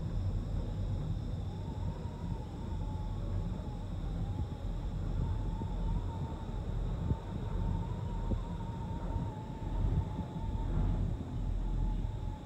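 Gondola cabin riding along its cable: a steady low rumble with a faint wavering whine above it.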